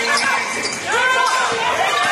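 Basketball bouncing on a hardwood gym floor during a dribbling drill, with a short rising-and-falling squeal about a second in.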